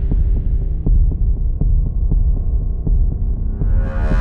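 Deep, loud rumbling drone with sustained low tones and a faint steady tick about three or four times a second, a suspense underscore; near the end a swell of higher tones begins to rise.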